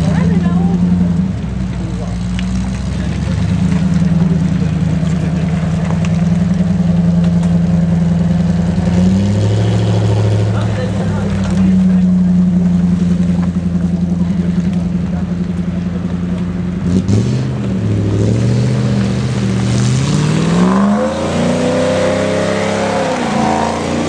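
Off-road Range Rover Classic engine running under load on a muddy climb, the revs rising and falling as the throttle is worked. The pitch steps up twice in the first half, drops in the middle, then climbs steadily in the last few seconds.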